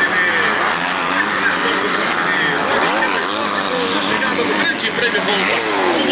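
Motocross bikes racing on a dirt track, several engines revving up and down and overlapping as the riders accelerate and take jumps.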